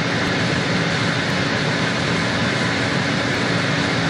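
Water booster pump on a variable-frequency drive and the drive cabinet's cooling fan running steadily: an even mechanical drone with a constant hum.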